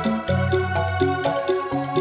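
Campursari band music played live: sustained melody notes over a bass line with a steady, even beat, with no singing.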